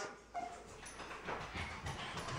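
A brief, faint whimper from a Jack Russell terrier puppy shortly after the start, then a few faint light ticks.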